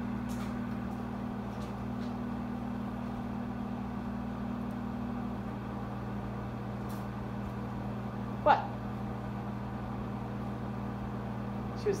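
Steady hum of an overhead projector's cooling fan, with a few fixed low tones; one of the tones drops out about five seconds in.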